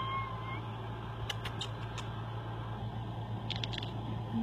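Domestic cat giving a short, faint, level high-pitched call right at the start, followed by a few faint clicks over a steady low hum.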